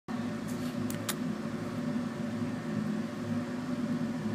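Steady low mechanical hum, with a few faint clicks in the first second or so.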